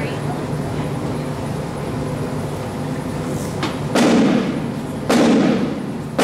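Rope-tension field drums of a fife and drum corps: after a few seconds of quiet hall sound, two loud single drum strokes about a second apart near the end, the call-in that starts the corps' next tune.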